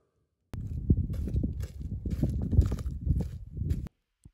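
Soft, irregular low thumps and rumbling, beginning about half a second in and stopping just before the end.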